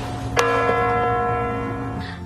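A large bell struck once about half a second in, ringing on with several steady tones that slowly fade: a clock tolling midnight.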